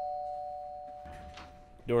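The tail of a two-note doorbell chime: both tones ring on together and fade away steadily until a voice cuts in near the end.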